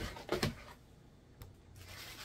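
A metal spoon beating fufu dough in a plastic bowl: two knocks close together near the start, then a faint click.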